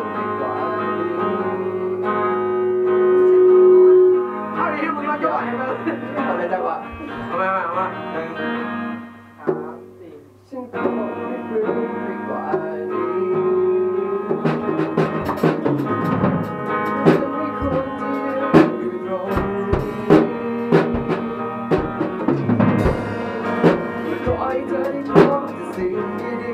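A rock band playing live in a rehearsal room: electric guitars and bass holding sustained chords, with one held note swelling loud about four seconds in. The band drops away briefly about ten seconds in, then the drum kit comes in with sharp repeated hits under the chords for the rest of the passage.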